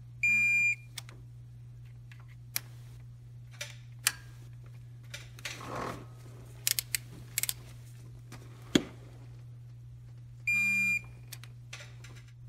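Electronic torque wrench beeping twice, each beep about half a second long, once near the start and once near the end, signalling each time that a camshaft phaser bolt has reached its 18 ft-lb setting. Between the beeps come scattered short metallic clicks and knocks of the wrench and socket on the bolts.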